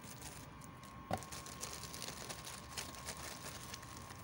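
Clear plastic packaging bags crinkling and rustling as a hand rummages through them in a cardboard box, with one sharper click about a second in.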